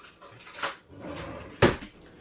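Kitchen items being handled and set down: a soft knock about half a second in, then one sharp, loud clack just past a second and a half.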